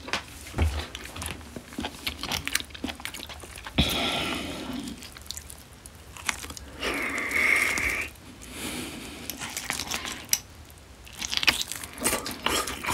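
Close-miked mukbang eating sounds from marinated grilled beef short ribs (LA galbi): scattered clicks and smacks of chewing and biting. Two longer rustling stretches come about four and seven seconds in.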